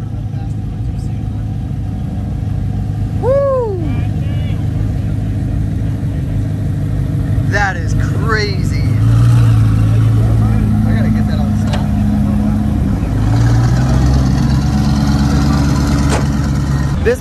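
Twin-turbo Audi R8's engine running at a steady idle, then held at higher revs, stepping up about nine seconds in and again about thirteen seconds in. A few short whoops or shouts rise over it.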